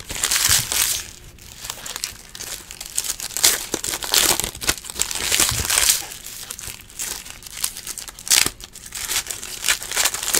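Foil wrappers of 2018 Diamond Kings baseball card packs crinkling as the packs are torn open by hand, in an irregular string of crackly bursts.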